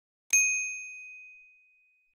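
Notification-bell 'ding' sound effect: a single bright bell strike about a third of a second in, ringing out over about a second and a half.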